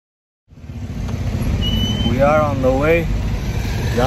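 Steady low rumble of a moving car heard from inside the cabin, engine and road noise fading in about half a second in; a voice speaks briefly near the end.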